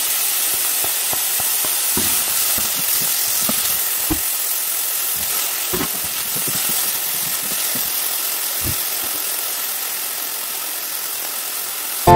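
Chicken, onion and tomato sizzling steadily in hot oil in a nonstick frying pan, easing slightly toward the end, with scattered taps and scrapes of a wooden spatula stirring the food.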